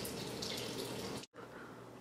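Tap water running steadily into a sink, cut off abruptly about a second in, leaving only faint room noise.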